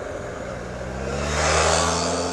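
Motorcycle engine pulling away out of a turn, its pitch rising slowly and getting louder after about a second, with a growing hiss of wind noise.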